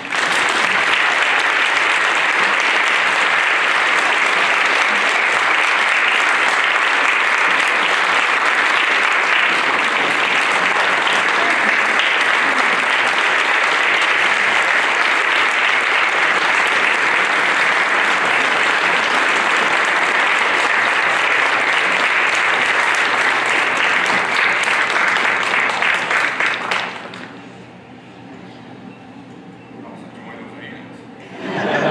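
A large audience applauding, loud and sustained, then dying away fairly quickly near the end.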